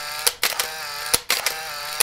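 Sound effect of an animated logo intro: a steady, buzzy mechanical whirr with a few sharp clicks, briefly broken twice.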